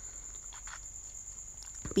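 A cricket trilling steadily at a high pitch, with a couple of faint knocks about a third of the way in and near the end.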